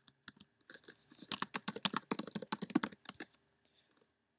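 Typing on a computer keyboard: a few scattered key clicks, then a fast run of keystrokes that stops a little after three seconds in.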